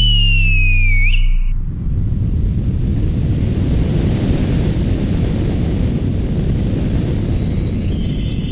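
Sound effects in a dance routine's backing track: a high squealing tone for about the first second, then a steady low rumbling noise that runs on until the music's high end comes back near the end.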